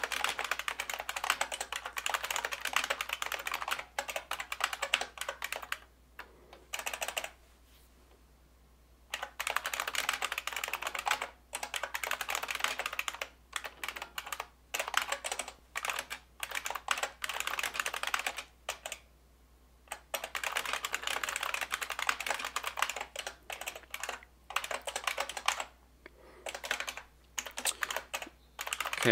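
Rapid typing on a computer keyboard, in bursts of fast keystrokes broken by pauses of a second or two.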